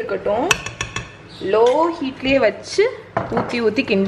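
A spatula knocking and scraping against a white ceramic-coated wok while thick milk cake mixture is stirred: a sharp knock about half a second in and a run of clicks near the end.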